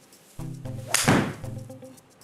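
A fairway wood strikes a golf ball off a hitting mat: one sharp crack about a second in, with a brief ringing tail, over background music.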